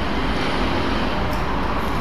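Steady background noise, a low rumble with hiss, holding at an even level with no distinct events.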